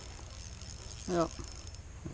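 A man says a single short "yep" about a second in, over steady low background noise; no other distinct sound stands out.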